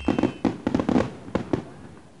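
Fireworks crackle sound effect: a scatter of sharp pops and crackles, thickest in the first second, thinning out and fading away by the end.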